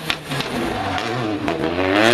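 Rally car engine coming off the throttle for a corner, its pitch falling, with a few sharp cracks from the exhaust, then rising again as it accelerates near the end.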